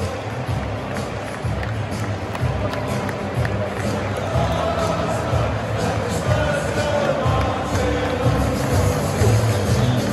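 A large football stadium crowd at the final whistle, with music playing over the crowd noise and cheering. It grows a little louder toward the end.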